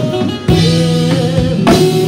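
Live gospel worship music: a band with guitar and drum kit playing under sung melody lines, with heavy drum strokes about half a second in and again near the end.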